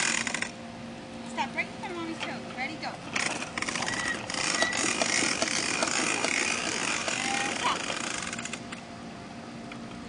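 Child's small bicycle with plastic training wheels rolling over rough asphalt: a rattling, grinding noise that comes and goes, loudest from about three to eight and a half seconds in.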